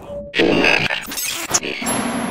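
Electronic glitch sound effect for a title transition: stuttering bursts of static-like noise that start about a third of a second in, after a brief tone.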